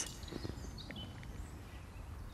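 Quiet outdoor background with a few faint, short bird chirps about a second in.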